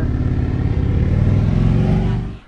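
A motor vehicle's engine running loud and close, drowning out the talk, its pitch rising slightly as it accelerates and grows louder.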